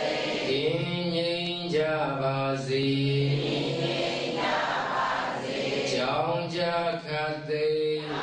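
A Buddhist monk chanting in a slow, drawn-out melody on long held notes, in two phrases with a short break between them.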